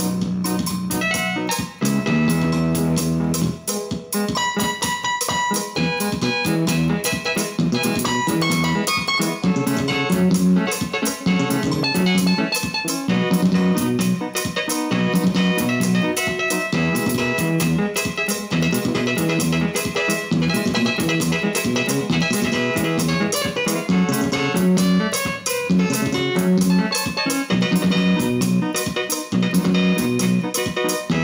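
Electronic arranger keyboard played with both hands, a melody over its built-in backing accompaniment, with a steady beat throughout.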